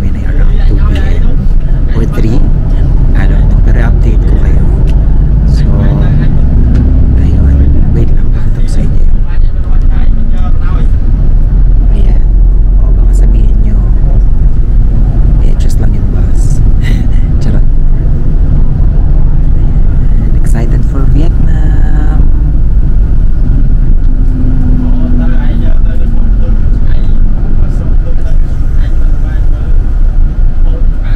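Steady low rumble of a moving coach bus, heard from inside the cabin, with indistinct voices over it.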